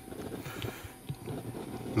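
Kimchi base sauce being poured from a bottle onto sliced cucumbers in a metal bowl: faint, uneven low sounds with a few soft ticks.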